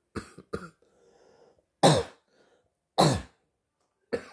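Two loud coughs about a second apart, after two shorter, softer coughing or throat-clearing sounds right at the start.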